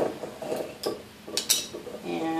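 A glass wine bottle and small plastic items being handled on a tiled countertop, with about five light knocks and clinks at uneven intervals.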